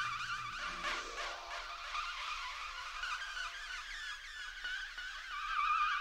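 Experimental electronic music: a dense, high warbling texture whose pitch wavers restlessly up and down, with a falling sweep about a second in.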